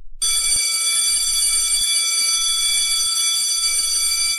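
Electric doorbell ringing loudly and steadily for almost four seconds, a high-pitched metallic ring without a break: a visitor is at the front door.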